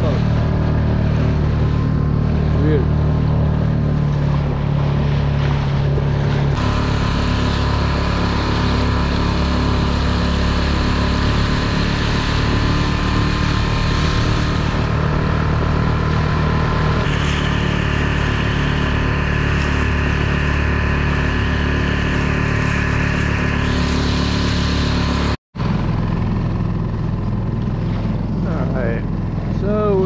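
Outboard motor of a Solo Skiff running steadily under way, with water rushing along the hull. The engine note shifts twice, and the sound cuts out for an instant near the end.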